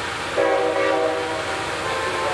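Locomotive air horn sounding one short blast of about a second, several notes at once in a chord, over a steady background noise.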